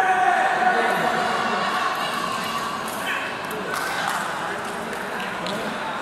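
Voices of players and onlookers in a sports hall: a drawn-out shouted call in the first second, then mixed chatter, with a few short sharp knocks about halfway through.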